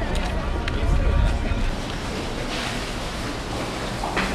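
Indistinct voices of people talking, with wind rumbling on the microphone for the first couple of seconds.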